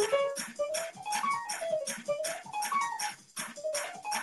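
Keyboard music: a lead line that slides up and down in pitch over a steady drum beat of about four hits a second.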